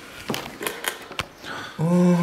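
A few light clicks and knocks as the top access hatch is lifted off a balsa model-airplane fuselage, followed near the end by a man saying "Oh".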